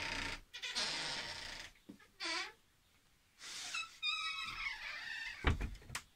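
Motorhome bathroom door squeaking on dry hinges as it swings, in wavering creaks that rise and fall in pitch: the hinges need oil. Near the end the door shuts with a thump.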